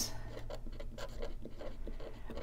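Pen writing a word by hand on a paper budget sheet: a run of short scratching strokes on paper.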